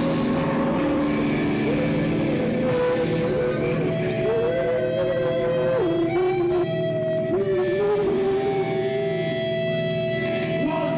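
Live rock band playing, with a lead line of long held notes that slide and waver in pitch over the rhythm section.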